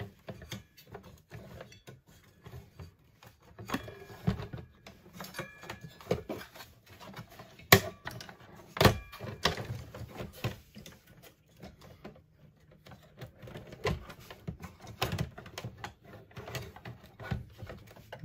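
Scattered clicks, taps and rattles of an RV converter/charger unit and its wires being handled and fitted into the power-center panel, with two sharper knocks a little before halfway and about a second apart.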